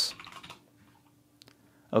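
Computer keyboard keys clicking as capital letters are typed: a few quiet keystrokes in the first half second, then one more click about a second and a half in.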